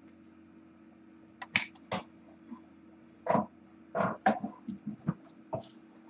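A steady low hum with a scatter of short rustles, taps and thumps. The loudest come a little past three seconds and around four seconds in. They are movement noises from kittens and a person on a carpeted floor.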